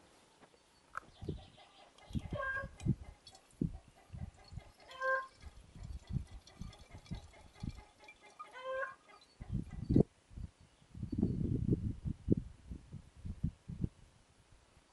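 Bumps and rustles of a handheld camera being moved about, loudest in a cluster of thumps near the end, with a chicken clucking three times in the background.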